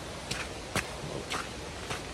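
Footsteps of a hiker walking on a forest trail: four evenly paced steps in two seconds, over a steady background rush.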